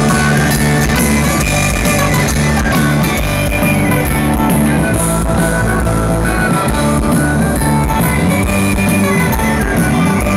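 Live rock band playing an instrumental passage without vocals: electric guitars over bass and drum kit, loud and continuous.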